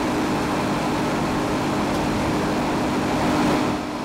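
FG Wilson 200 kVA generator set with a Scania diesel engine, running with its baffled doors open: a loud, steady engine noise with a constant hum. It is a bit loud.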